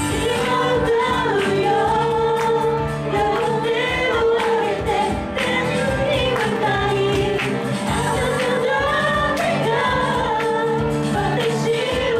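Live Japanese praise-and-worship song: a woman sings the lead melody into a handheld microphone, with backing voices, electric guitar and keyboard playing along.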